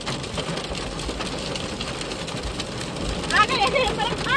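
Hail and heavy rain pelting the car's roof and windscreen, heard from inside the car as a dense, steady patter of small hits. Near the end, a voice briefly rises and falls.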